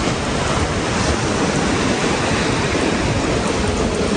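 Steady rushing noise of sea surf along the shore, with wind buffeting the microphone.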